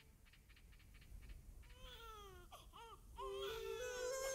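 A newborn baby crying: a few short wailing cries, starting a little under two seconds in. Music with steady held notes comes in near the end.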